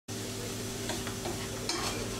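Food sizzling in an aluminium frying pan on a gas burner as it is stirred and turned with metal tongs and a spatula, with a few light clicks and scrapes of the utensils against the pan. A steady low hum runs underneath.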